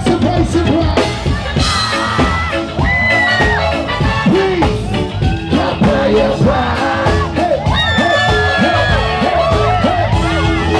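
Live reggae band playing through a PA: a male singer's voice over a steady bass and drum groove.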